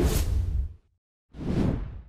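Two whoosh sound effects for an animated logo reveal, each about a second long with a deep low end. The second starts about a second after the first has faded.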